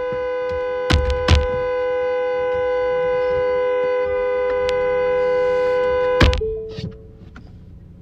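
A steady held electronic tone sounding several pitches at once, with a couple of knocks about a second in. It cuts off with a knock about six seconds in, leaving a fainter, lower held tone.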